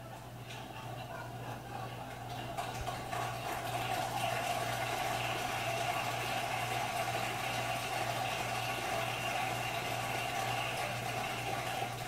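A studio audience clapping and cheering, swelling over the first few seconds and then holding steady, heard through a television speaker.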